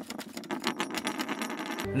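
Typing sound effect: a rapid run of key clicks, about ten a second, stopping shortly before the end.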